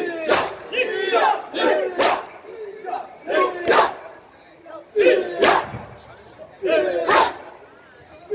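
A crowd of mourners performing matam: sharp hand strikes on the chest, mostly in pairs about every second and a half, with loud shouted chanting from the men between and over the strikes.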